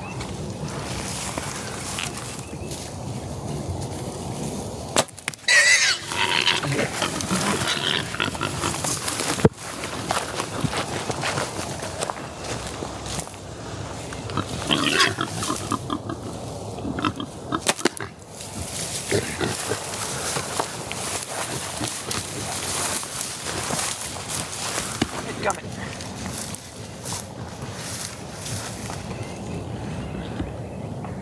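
Feral hogs squealing and grunting close by, with a few sharp snaps of a compound bow being shot and rustling of dry grass.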